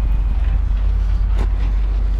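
Pickup truck engine running with a steady low rumble, heard from inside the cab with the window down.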